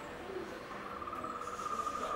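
A steady, even insect trill that starts under a second in.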